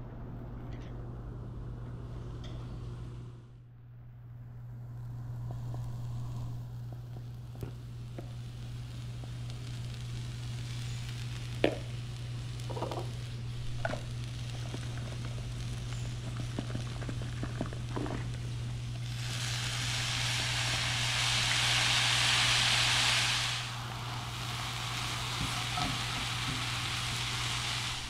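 Tofu scramble frying in a skillet, sizzling steadily, with a few light clicks and taps. The sizzle swells into a louder hiss for about four seconds in the latter half.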